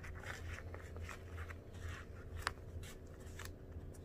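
Faint rustling and rubbing of a folded 3M N95 respirator as fingers stretch it out and press it against the face, with one sharper tick about two and a half seconds in. A steady low hum runs underneath.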